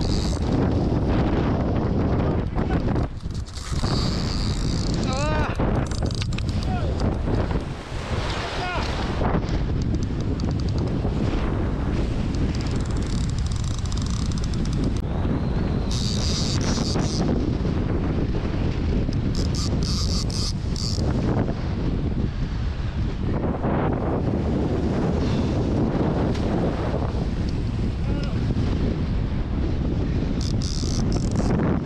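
Strong wind buffeting the microphone over a steady rush of surf, with a few brief high-pitched rasping bursts.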